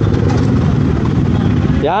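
A motorcycle engine running as the bike rolls at low speed, heard as a steady low rumble on the rider-mounted microphone. A man's voice breaks in near the end.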